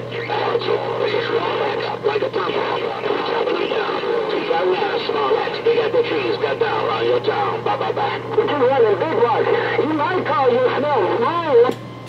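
Voices received over a Galaxy CB radio's speaker, garbled and unintelligible, with a steady hum beneath. The incoming transmission drops out just before the end.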